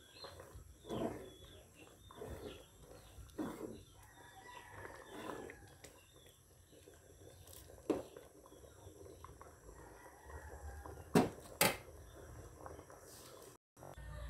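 Thick rice-and-cocoa porridge (champorado) being stirred with a spatula in a pot as it simmers, with irregular soft thick-liquid sounds. A few sharp knocks, the loudest two close together about two-thirds of the way in, sound like the spatula striking the pot.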